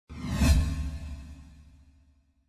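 Whoosh sound effect with a deep rumble, swelling to its loudest about half a second in, then fading away.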